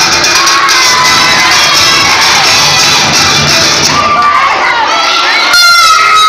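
A crowd of young people shouting and cheering loudly, many voices at once, with music underneath that fades out about halfway through.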